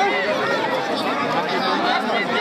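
Crowd chatter: many voices talking and calling out at once, overlapping into a steady babble.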